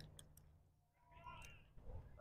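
Near silence: faint outdoor background with a few faint clicks and a brief faint pitched sound in the distance.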